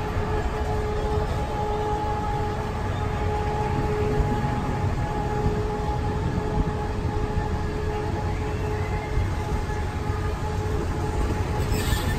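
Europa-Park monorail train running along its single rail, heard from on board: a steady low rumble with a constant whine held at one pitch.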